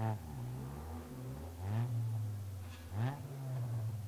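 Rally Toyota Yaris engine revved in three short bursts at low speed, each time the pitch jumping up and falling back, with steadier low running in between.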